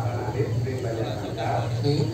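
A man speaking in Balinese into a microphone through a PA system, in two short phrases, over a steady low hum.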